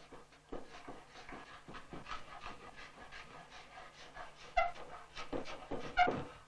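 Cabinet scraper (sikling) smoothing the wooden seat of a hand-made chair: quick, even scraping strokes, about four a second. One louder stroke about two-thirds of the way through gives a brief squeak.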